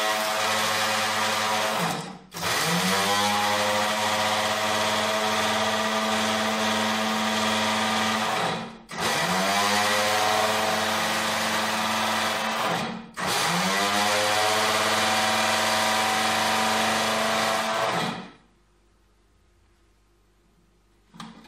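Small electric kitchen grinder running in long pulses, grinding eggshells into powder. The motor cuts out briefly and spins back up, rising in pitch, three times about every four to six seconds, then stops near the end.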